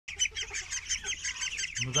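A flock of young domestic ducks calling in rapid, high-pitched peeps, many overlapping at about five calls a second.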